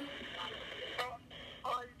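A faint, tinny voice over a phone line heard from a handset's earpiece, with steady line hiss; a click about halfway, then the far-end caller starts to answer near the end.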